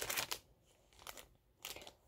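Crinkling of thin plastic packaging being handled: a flurry of quick rustles in the first half-second, then a few faint crackles.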